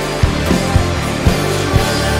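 Rock band playing an instrumental passage: the drum kit keeps a steady beat of about two strikes a second over sustained low notes.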